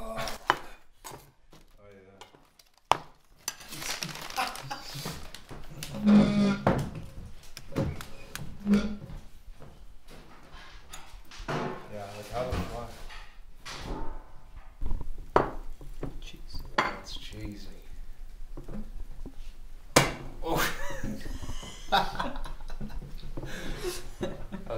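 A kitchen knife cutting and clinking against a ceramic plate, with sharp knocks now and then, under indistinct talk.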